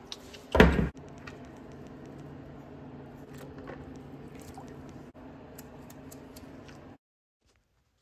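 A short, loud noise less than a second in, then a quiet steady hum with faint small ticks and splashes as a gloved hand works rusty steel parts in a tray of Deox C rust-removal bath. The sound cuts out about a second before the end.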